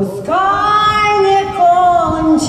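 A woman singing long held notes over musical accompaniment, played loud through a sound system; the phrase starts just after a brief pause and steps down to a lower note near the end.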